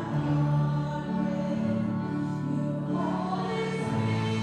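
Music: a choir singing in long, held notes that change every second or so.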